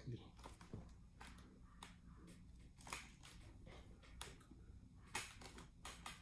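Near silence, with a few faint clicks and rustles from hands handling a motorcycle helmet's padding and fittings.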